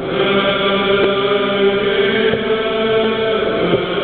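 Orthodox church choir singing a Bulgarian hymn a cappella, holding long sustained chords, with a new chord entering at the start.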